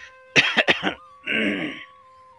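A person coughing: a quick run of three or four short coughs, then one longer, hoarse cough near the end.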